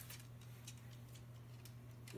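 Faint, scattered ticks of a small dog's claws on a hardwood floor as it walks, over a low steady hum.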